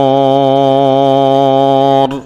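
A man's voice chanting Quranic recitation, holding one long note at a steady pitch with a slight waver. The note cuts off right at the end.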